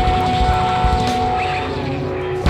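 Live rock band jamming loud: distorted electric guitars hold long, droning notes over drums and bass. The sound thins a little near the end.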